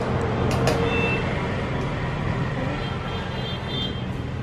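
Steady low rumble of background road traffic. Two sharp clicks come just over half a second in, and faint high thin tones follow in the second half.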